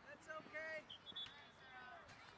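Faint, distant voices calling out across an open playing field, with a brief thin high tone about a second in.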